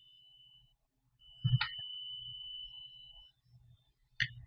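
A sharp click or knock about a second and a half in, with a steady high-pitched tone that starts just before it and lasts about two seconds.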